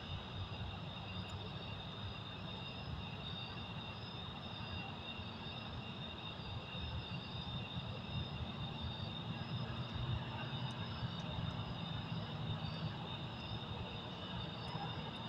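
Quiet background: a steady low rumble under a continuous high chirring of crickets.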